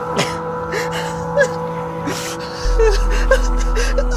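A man gasping and whimpering in short, ragged breaths, as if in pain or weeping, over a film score of sustained drone tones. A deep bass note enters about two-thirds of the way through.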